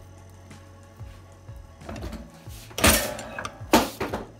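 Hand-operated three-in-one sheet metal shear cutting a small piece of sheet steel: two loud metallic chops less than a second apart, about three seconds in, after a couple of seconds of small handling sounds.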